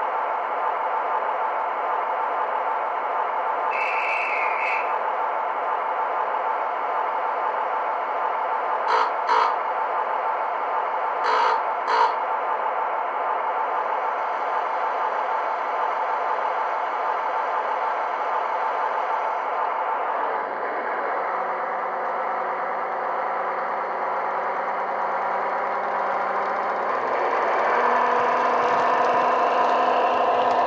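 Recorded Blue Pullman diesel engine sound from a model's DCC sound decoder, played through small megabass speakers, running steadily at idle. There is a brief beep about four seconds in and a few short clicks in pairs around the middle. Near the end the engine note grows louder as the train pulls away.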